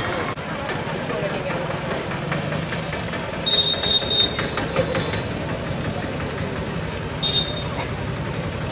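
Outdoor street ambience: indistinct voices of a gathered group over a steady bed of traffic noise. A high, thin steady tone sounds for about a second and a half in the middle, and briefly again near the end.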